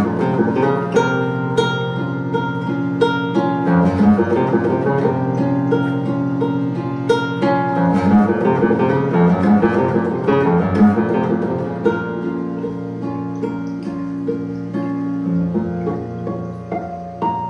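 Guitar played live: picked notes ringing out over sustained low tones, getting a little softer over the last few seconds.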